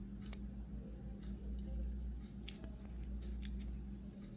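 Fingers handling a small diecast metal model car, making a handful of faint clicks and rubs over a steady low hum.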